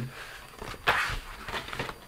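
Cardstock album pages being handled and flipped over on a craft mat: a sharp paper rustle about a second in, then a few lighter rustles and taps.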